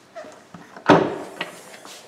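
Hyundai i30 hatchback tailgate being opened: one sharp latch click a little under a second in as the release lets go, with a few lighter clicks and knocks around it.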